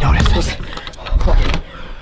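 Thumps, clatter and rustling of a hurried scramble at close range, with short vocal sounds or breaths mixed in.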